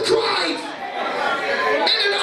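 Voices in a large hall: a preacher speaking into a microphone, with congregation voices chattering alongside.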